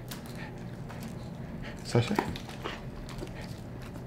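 A dog panting softly, mouth open, while it waits for food; a voice calls a dog's name about two seconds in.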